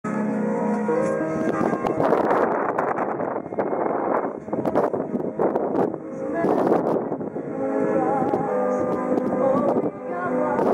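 Music with long held notes, broken by loud bursts of noise about two, four and a half and six and a half seconds in.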